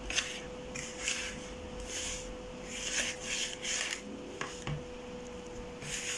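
Wire whisk stirring a stiff, still mostly dry flour and cocoa brownie mixture in a bowl, making repeated scraping, rasping strokes.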